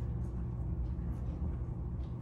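Steady low rumble of background room noise, with no clear event standing out.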